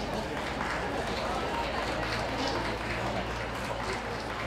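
Indistinct chatter of spectators around an outdoor show ring: a steady murmur of many voices with no clear words.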